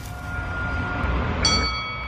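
Logo-sting sound design: a low rumble under a held ringing tone, then a bright, bell-like metallic chime about one and a half seconds in that rings on.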